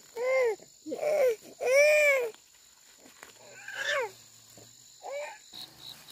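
A young child crying out in short wails, about six of them, each rising and then falling in pitch; the loudest comes about two seconds in. Faint, rapid insect chirping starts near the end.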